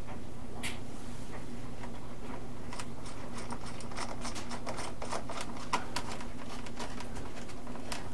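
Light clicks and ticks of a screwdriver and fingers working small screws into the cowl on an RC biplane's nose, in a quick run through the middle, over a steady low hum.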